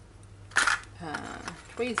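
Brief handling noise of plastic: a short crackling clatter about half a second in as a clip-lock plastic container and zip-lock bags of first aid items are moved about, then softer rustling. A woman's voice begins near the end.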